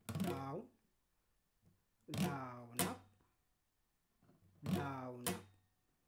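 Acoustic guitar strummed very slowly in a down, down-up, down-up pattern: a single down stroke, then a pair of strokes about two seconds in, then another pair near the end, each chord ringing out and fading between strokes.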